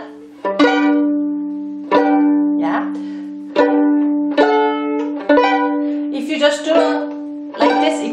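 Violin pizzicato chords: a finger plucks three strings in one diagonal sweep, about six times, each chord ringing briefly and fading before the next.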